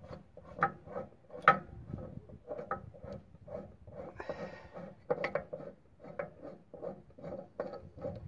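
Lawn tractor trailer hitch being worked on by hand: a run of irregular light metal clicks and clunks, about two or three a second, with a short scrape about four seconds in.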